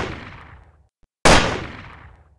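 Gunshots from a run of three: the echo of one shot dies away at the start, then another sharp shot comes about a second in and fades out in a long echo.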